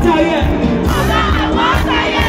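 A live soca band plays loudly through the PA with a steady beat, over a crowd whose voices shout and sing along close to the phone.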